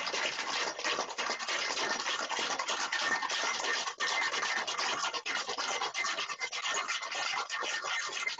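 Ice cubes rattling inside a Boston shaker being shaken hard and continuously, the cocktail being chilled and mixed.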